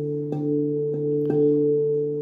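Steel tongue drum in D Kurd tuning struck with mallets: bell-like notes ring on and overlap, with two fresh strikes about a third of a second in and just past a second in.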